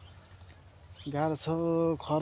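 Insects chirring in a fast, high, steady pulse through the grass. About a second in, a man's voice comes in with a drawn-out sound that is louder than the insects.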